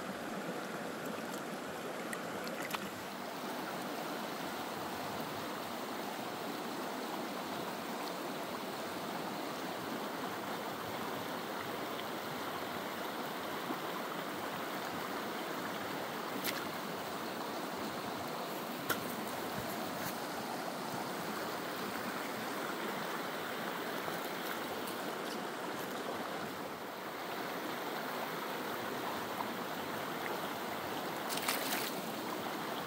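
Small creek's water running over rocks: a steady rush, with a few faint clicks scattered through it.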